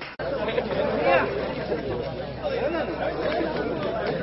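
Several people talking over one another in a steady chatter of voices, after a brief dropout just after the start where the recording is cut.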